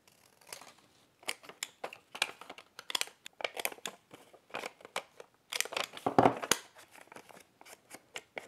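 Scissors snipping through a strip of lined notepaper in a string of short, quick cuts, then a handheld corner-rounder punch clicking as the paper's corners are rounded off. The loudest cluster of snaps comes a little past the middle.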